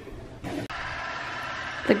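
Small battery-powered water flosser's pump running with a steady buzz, starting about half a second in.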